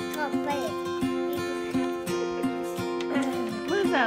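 Background music with acoustic guitar strumming a steady, even rhythm.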